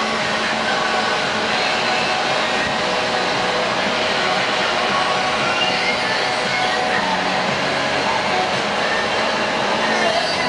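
Bus-wash water spray pounding on the body and windows of a Starcraft shuttle bus, heard from inside the bus as a steady, loud rushing noise.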